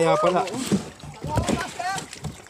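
Speech: voices talking in Tagalog, with short remarks and calls.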